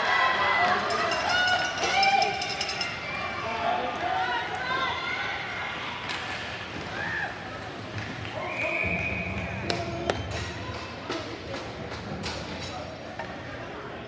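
Spectators shouting and calling out during a youth ice hockey game, loudest in the first few seconds. Later come sharp clacks of hockey sticks, puck and boards.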